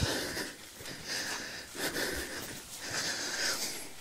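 A hiker's heavy breathing close to the microphone while walking uphill, about four breaths in a few seconds.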